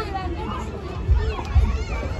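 Children's voices and chatter in the background as children play, with a few low thumps about a second and a second and a half in.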